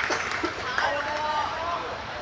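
Young voices shouting and calling out over background chatter, as players celebrate a goal.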